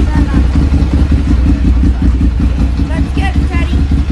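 Motorcycle engine running, a loud, steady low rumble close to the microphone.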